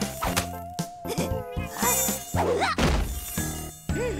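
Cartoon mosquito buzzing: a steady, thin, high whine through the first second and a half or so, mixed with several sharp knocks and short wavering cartoon vocal sounds.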